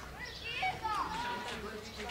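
Children shouting and calling out, high voices sliding up and down in pitch.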